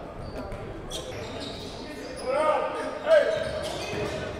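Live sound of an indoor basketball game in a large, echoing gym: a basketball bouncing on the hardwood court under the low hum of the hall, with a couple of short shouts from players later on.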